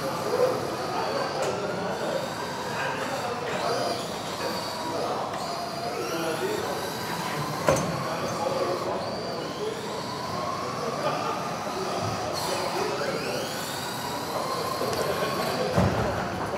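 Several electric RC racing cars' motors whining together, their pitch rising and falling as they speed up and brake around the track. There is a sharp knock a little before halfway and a low thump near the end.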